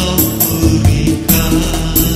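Music: an Indonesian gospel song playing, with a strong bass line and percussion.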